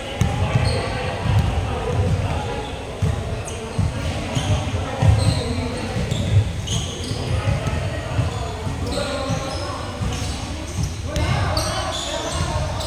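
A basketball bouncing on a hardwood gym floor during play, thumping many times at an uneven pace, with short high squeaks of sneakers and players' voices in the echoing hall.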